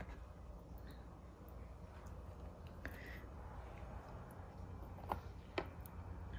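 Quiet kitchen sounds with a steady low hum and a few faint clicks and taps: a fork against a plastic container and an air fryer basket as marinated steaks are lifted and laid in.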